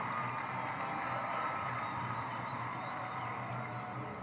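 Steady background noise of a large outdoor gathering during a pause in the speech: an even hum and murmur with no clear single sound standing out.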